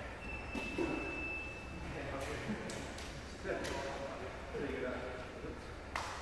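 Indistinct voices of people talking in a large hall, with several sharp knocks from grappling on floor mats. A steady high tone sounds for over a second near the start.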